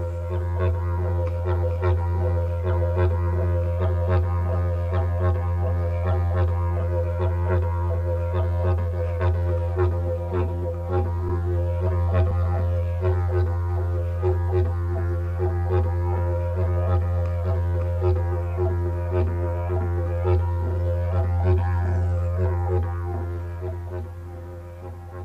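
Background music of a didgeridoo drone: one low, steady note with a pulsing rhythm and an overtone colour that keeps shifting, fading out near the end.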